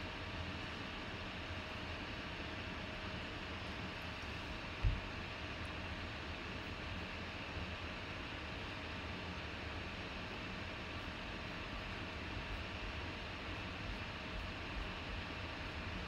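Steady background hiss of room noise with no speech, and a single brief low thump about five seconds in.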